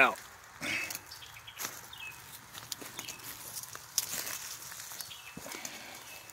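Footsteps crunching through dry leaf litter and twigs, irregular steps with a few sharper snaps and knocks.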